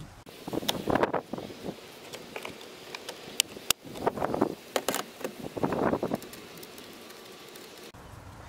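Hands handling car-interior parts and tools at the steering column: a few sharp clicks and short bouts of scraping and rustling.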